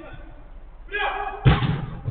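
A football struck hard, a single loud thump about one and a half seconds in, just after a player's short shout.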